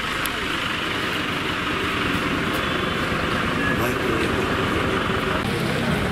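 Busy street ambience: steady traffic noise with voices in the background.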